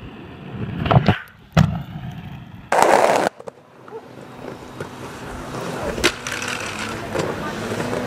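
Inline skate wheels rolling on hard ground, with sharp knocks about a second in and a loud, harsh half-second scrape near the middle.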